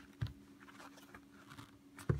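Faint handling sounds of a knife being pushed down into a leather sheath: a short click about a quarter second in, then light scattered ticks and rustling of leather under the hand.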